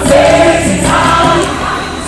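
Many voices singing a gospel revival hymn together, choir-style, over a live band.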